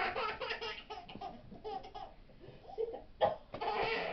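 A baby laughing in repeated bursts, with a run of laughs at the start and the loudest peal near the end.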